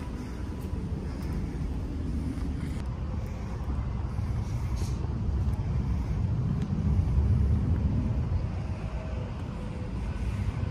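Low, steady outdoor rumble with no distinct single source, swelling a little about seven seconds in.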